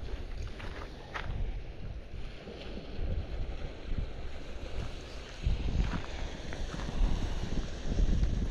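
Wind buffeting the microphone in uneven gusts, a low rumbling roar. A few faint, light clicks sound over it.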